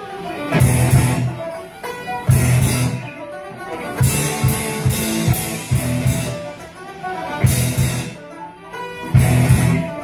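Live band music: violins, banjo, guitar and drum kit playing together, with loud accented bass-and-cymbal hits recurring in a steady pattern.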